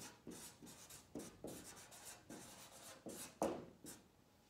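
Marker pen writing on flip-chart paper: a run of short, faint scratching strokes as the words are written out.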